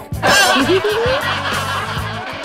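Background music with a repeating bass pattern, and a brief laugh rising in pitch in the first second.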